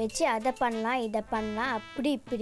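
A voice singing a melody, holding notes and bending them up and down in quick wavering turns.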